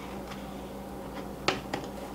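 Two light, sharp clicks about a second and a half in as the unpowered biscuit joiner is shifted into position by hand against the edge of an oak board, over a faint steady hum.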